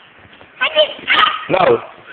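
A dog giving three short barks in quick succession, starting about half a second in, the last dropping in pitch.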